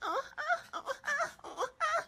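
A person's high-pitched wailing voice in a string of short cries that waver up and down in pitch.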